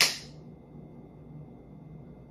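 A single sharp crack at the very start, dying away within about half a second, over a faint steady room hum.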